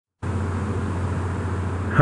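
Steady low hum with an even hiss: the background noise of a home microphone recording, starting about a fifth of a second in.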